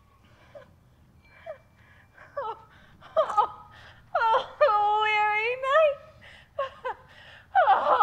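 A woman's theatrical whimpering and wailing: a few short sobs, then one long drawn-out wail that rises in pitch near its end, with more crying starting near the end.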